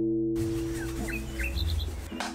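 A held musical note cuts off just after the start. A few short, falling bird chirps follow over a low background hum.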